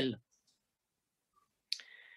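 The tail of a man's word, a pause of near silence, then about 1.7 s in a short mouth click followed by a faint breath, just before he speaks again.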